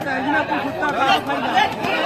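Many voices talking and calling out at once: chatter and shouts from a crowd of spectators.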